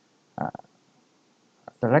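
A man's narration pausing mid-sentence: a short vocal hesitation sound about half a second in, a small mouth click, then speech resumes near the end.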